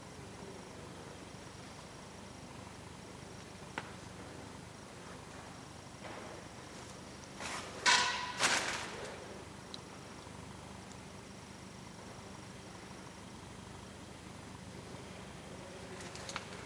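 Quiet room tone in a machine hall with a steady low background noise. A single soft click comes about four seconds in, and a brief two-part rustling noise, the loudest thing here, comes about halfway.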